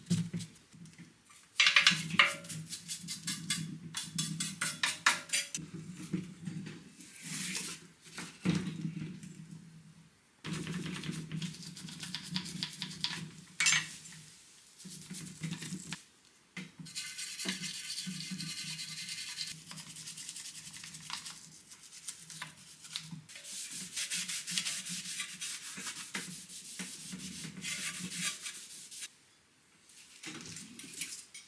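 Brush and rag scrubbing on the oily metal engine case of a Honda EM400 generator, in runs of quick back-and-forth strokes broken by short pauses.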